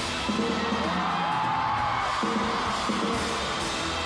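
Live concert audio: band music playing over a crowd of fans screaming and cheering.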